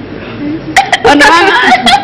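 Women laughing in short bursts mixed with talk, starting a little under a second in after a brief lull.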